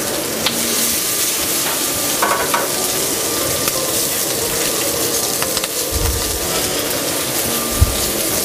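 Head-on shrimp sizzling steadily in canola oil in a screaming hot pan, with a few light clicks of metal tongs moving them in the pan. A couple of dull low thumps come in the last two seconds.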